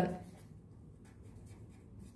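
Pen writing on paper: faint scratching strokes as the pen forms letters, after a voice trails off at the very start.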